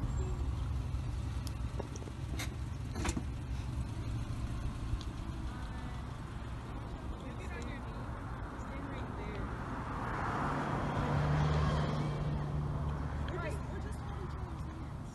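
Steady low engine rumble of road traffic, with a vehicle's noise swelling and fading about ten to twelve seconds in as it passes.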